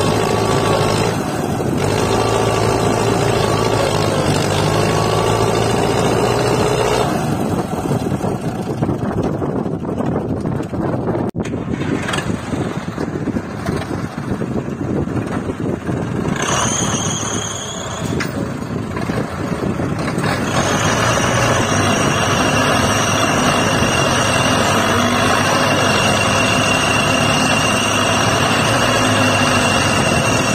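Diesel tractor engines running under load as front-end loaders dig into and lift soil. Near the middle the sound changes abruptly, and in the second half a steady high-pitched whine runs over the engines.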